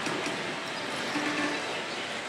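Steady, even din of a pachislot parlour full of running slot machines, with a brief faint tone about a second in.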